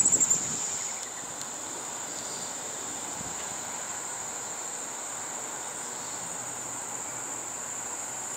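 A steady, high-pitched chorus of trilling insects, holding one pitch without a break.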